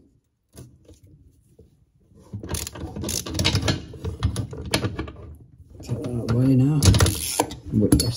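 Ratchet handle clicking as it turns a crow's foot spanner on a long extension, working the tap connector nut up behind a basin; the clicking starts about two seconds in and comes in quick runs.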